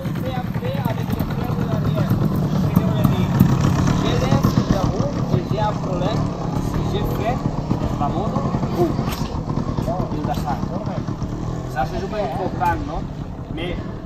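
Several trials motorcycles idling together, a steady low engine note, with indistinct voices over them.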